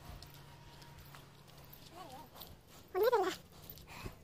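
Two short animal calls, each rising and falling in pitch: a faint one about two seconds in and a louder one about a second later.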